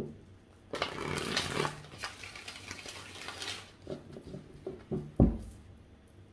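A tarot deck being shuffled by hand: a dense rustling run of cards lasting about three seconds, then a few light clicks and a single low thump near the end.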